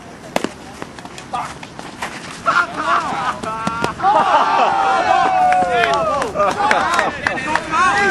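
A bat strikes a ball with one sharp crack about half a second in. From about two and a half seconds on, several players shout and call out over one another, louder than the hit.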